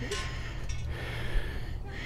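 Wind buffeting the phone's microphone on an exposed tower-top platform: a steady low rumble with a faint hiss above it.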